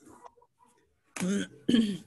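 A person clearing their throat in two short bursts near the end, the second louder.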